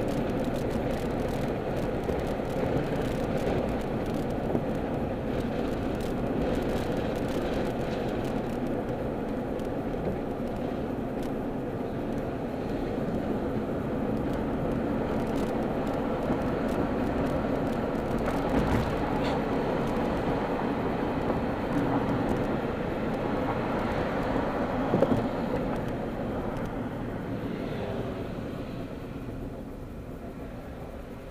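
Steady road and engine noise heard from inside a moving car's cabin. It has one brief sharp knock about three-quarters of the way through and dies down over the last few seconds.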